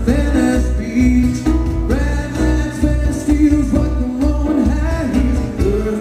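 Live unplugged band music: a male voice singing long held notes over strummed acoustic guitar, with a pulsing bass line underneath.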